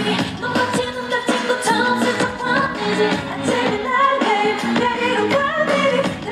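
K-pop dance song with female group vocals over a steady beat, played loud through a concert sound system during a live stage performance.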